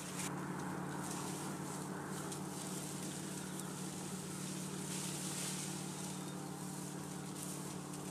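A small engine idling, giving a steady low hum that does not change in pitch or level, with a light hiss above it.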